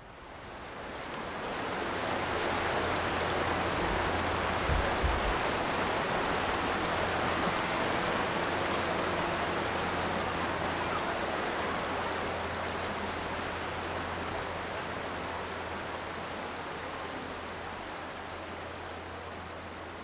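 Steady rushing noise of water, fading in over the first couple of seconds and slowly easing toward the end, with a faint low hum beneath it.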